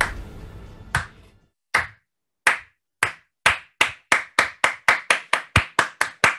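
A single person's hand claps, starting slow and speeding up: an accelerating slow clap of about sixteen sharp claps, ending in a quick run of about five a second.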